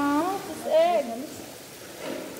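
A person's wordless voice: a drawn-out sound that dips and rises in pitch, then a shorter, higher, wavering one about half a second later.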